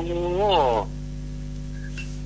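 A voice drawing out one long 'oh' for under a second, its pitch rising and then falling, over a steady electrical mains hum that then continues alone.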